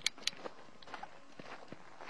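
Footsteps on a dusty dirt road, irregular and fairly faint, with two sharp clicks near the start.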